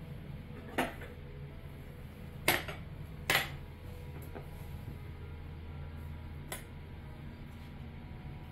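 Metal tongs clinking against porcelain plates as pieces of cooked crab are set down: four short sharp clinks, the loudest two close together a little before the middle. A steady low hum underneath.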